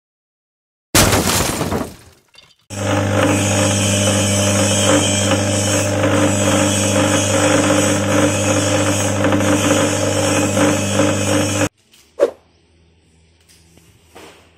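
A sudden loud crash-like burst about a second in, dying away within a second. Then a small electric suji-leaf grinder and chopper runs steadily with a strong motor hum, grinding leaves into green pulp, until it cuts off abruptly near the end. A single click follows.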